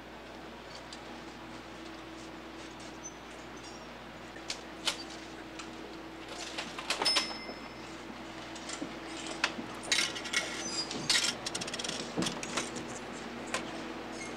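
Department-store background with a steady low electrical hum, and light clicks and metallic clinks of merchandise and clothes hangers being handled on racks. The clicks start about four seconds in and are busiest in the second half.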